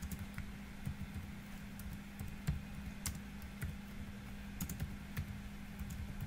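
Typing on a computer keyboard: slow, irregular keystrokes, a few characters over several seconds. A steady low hum runs underneath.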